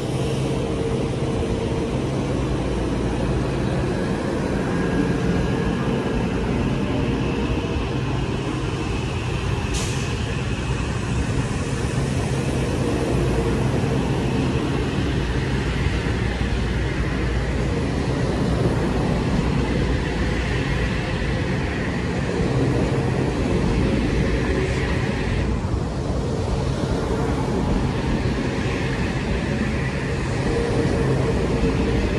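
Kawasaki M8 electric multiple-unit train standing at the platform, its onboard electrical equipment giving a loud, steady hum. There is a sharp click about ten seconds in.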